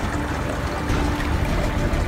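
Steady low rumble with an even hiss over it from a small boat sitting on the river as light rain begins.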